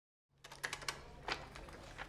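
Faint scattered light clicks and taps at an office desk over a low steady room hum, starting about half a second in.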